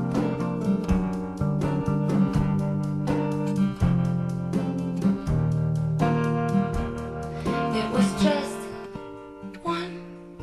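Acoustic guitar strumming chords in a steady rhythm during an instrumental break in a song, with no singing. It grows quieter near the end.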